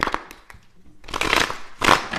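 Tarot cards being shuffled by hand: a sharp click at the start, then two short rustling bursts of cards, the first about a second in and a briefer one near the end.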